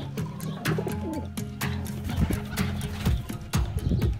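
Pigeons cooing over music.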